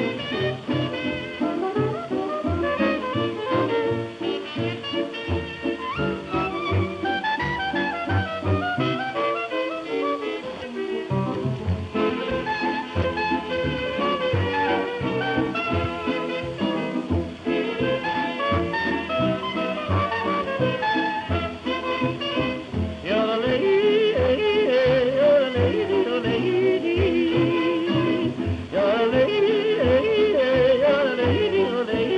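Hot jazz dance band playing an instrumental chorus in swing time, from a badly worn 1931 78 rpm shellac record played through a 1930s electric gramophone soundbox. About 23 seconds in, a man's yodelling voice comes back in over the band, louder.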